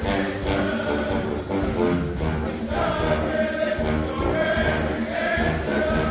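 Live brass ensemble playing: sustained horn chords over a sousaphone bass line, with a steady beat.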